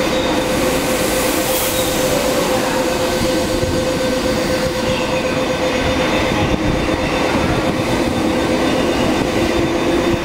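MTR East Rail line MLR electric multiple unit (Metro-Cammell stock) passing a station platform at speed without stopping. Its wheels on the rails make a steady, loud rumble with a constant droning tone running through it.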